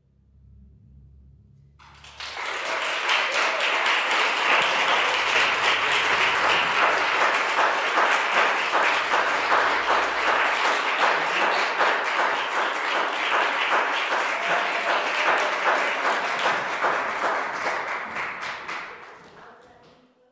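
Audience applause starting about two seconds in after a brief hush, a dense steady clapping that fades out near the end.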